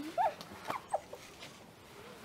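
Several short, high-pitched vocal cries, each rising and falling in pitch, with a faint click or two between them: affectionate squeals during an embrace.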